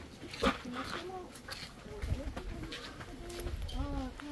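Indistinct voices of people nearby, with footsteps and scattered clicks on a paved path and a low rumble about two seconds in.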